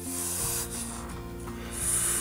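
Soft background music under a breathy, high hiss that swells near the end: an agitated black-headed spotted whipsnake hissing as it is handled, a threat display.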